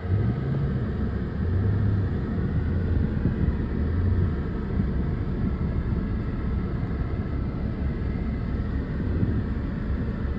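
Mercedes-Benz S65 AMG's 6.0-litre twin-turbo V12 running at low revs near idle, heard from inside the cabin, a steady low rumble. The engine note swells and rises briefly right at the start, then settles.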